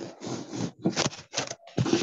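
About four short scraping, rustling strokes in an irregular run, picked up through a video-call microphone.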